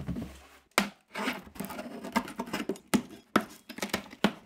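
Cardboard delivery box being handled and opened: a sharp knock about a second in, then a run of rustles, scrapes and sharp clicks as the taped flaps are pulled apart.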